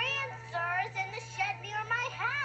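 A young girl's high-pitched voice on a film soundtrack, sounding through a television speaker with music underneath. The pitch rises and falls in short phrases.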